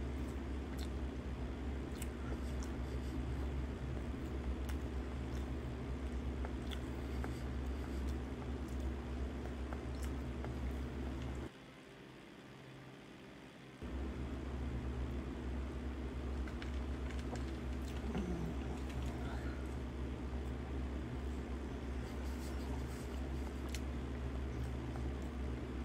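A steady low hum fills the room, with faint scattered clicks and smacks from a man chewing food. The hum cuts out for about two seconds near the middle, then returns.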